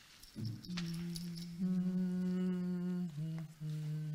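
A man's voice humming long, steady held notes. It steps up to a higher, fuller note about a second and a half in, then drops back down after about three seconds. This is the pitch being set between hymns of Byzantine chant.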